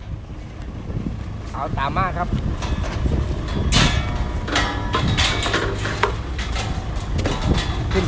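Footsteps climbing metal stair steps and onto stage decking, with a string of knocks and clanks in the second half, over a steady low wind rumble on the microphone. A voice with a wavering pitch is heard briefly about two seconds in.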